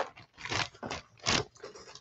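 A metal die set in a clear plastic sleeve and paper pillow boxes being handled and slid about on a cutting mat: about four short crinkling scrapes.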